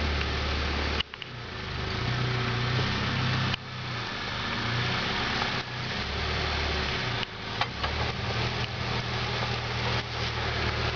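Suzuki Samurai's four-cylinder engine running at low revs as the truck crawls over rough trail, with a couple of sharp knocks. The sound breaks off and picks up again abruptly several times.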